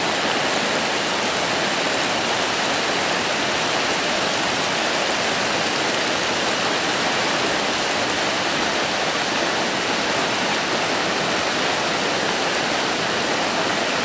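Steady rush of a swollen, muddy mountain river in flood after days of heavy rain, an even hiss that doesn't let up.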